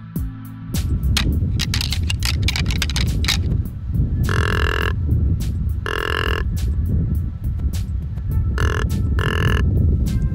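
Pair of deer antlers rattled and clashed together in a run of sharp clicks for about three seconds, then four blasts on a tube deer grunt call: two longer ones, then two short ones close together near the end. Background music runs underneath.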